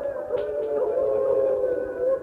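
A man's voice holding a long, slightly wavering sung note in a mourning lament (masaib recitation), with no break into words.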